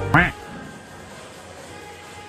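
Background music cuts off, and right after it comes one short, nasal, quack-like voiced sound. Only faint background noise follows.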